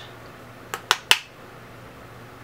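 Three quick, sharp clicks in close succession, about a second in, as a makeup brush and a plastic powder compact are handled.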